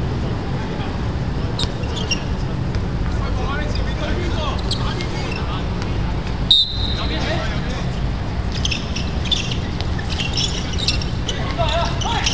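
Outdoor handball game sound: a steady low rumble with players' voices and short high squeaks scattered through. About six and a half seconds in comes one brief high whistle-like tone.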